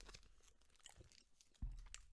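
Faint chewing of a chocolate praline, with small crackly clicks. A short, dull low thump comes near the end.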